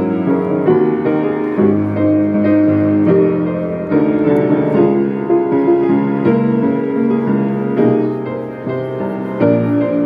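Grand piano playing a slow ballad arrangement, a melody over sustained chords with notes ringing into one another.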